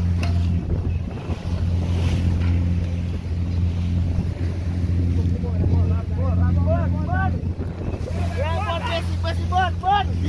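Steady drone of the wooden motor vessel's engine, with wind and waves splashing at the bow. From about halfway through, many seabirds call in short, repeated, arching cries.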